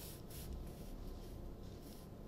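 Faint soft swishes over quiet room tone, the clearest in the first half second.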